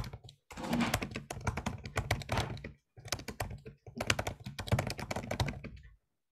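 Typing on a computer keyboard: fast keystrokes in several runs broken by short pauses.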